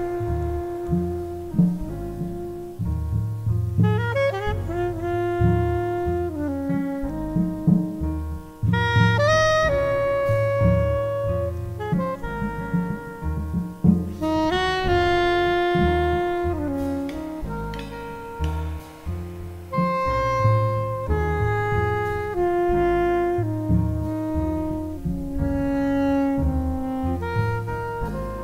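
Jazz quartet playing: a soprano saxophone carries a melody of long held notes over piano and double bass.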